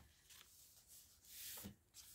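Faint paper rustling as hands handle and brush over the pages of a paper journal, with a soft swish about one and a half seconds in.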